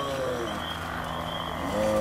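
Low, croaking zombie-style groan, drawn out and wavering in pitch, with a second groan starting near the end. A faint steady high whine runs underneath.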